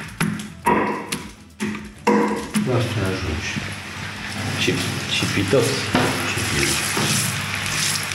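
Banana slices frying in hot oil in a pan, a steady sizzle that sets in about two seconds in, with a voice murmuring over it. A few sharp knocks come first.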